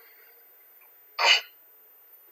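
A single short, sharp burst of breath from a person, a little over a second in, heard over a video-call microphone against a quiet background.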